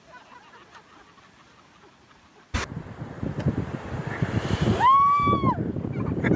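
Wind on the phone microphone with surf, starting suddenly about two and a half seconds in after a quiet stretch. Near the end a person gives one high drawn-out call.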